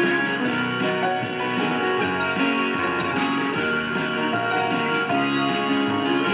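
Music with guitar playing from a 1964 Zenith H845E tube radio's speaker as it receives a broadcast station, running on without a break.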